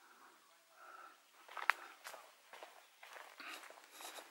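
Faint, uneven footsteps on a dry dirt and gravel trail, with one sharper click about one and a half seconds in.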